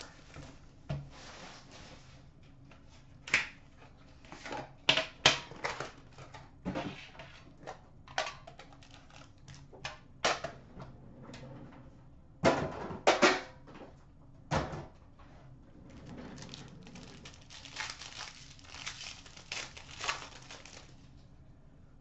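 Hands unwrapping and opening a sealed trading-card box: scattered clicks and taps of the box and knife against a glass counter, with a longer stretch of wrapper and card rustling in the last few seconds.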